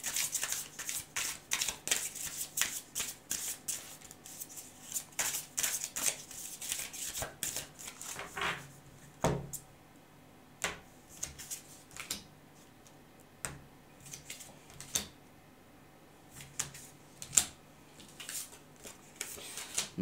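A tarot deck being shuffled and handled by hand: a dense run of quick card clicks and slaps for about the first half, thinning to a few separate taps later on.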